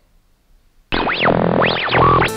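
About a second of near silence, then a synthesized transition jingle starts suddenly, with sweeping tones that glide up and fall back down.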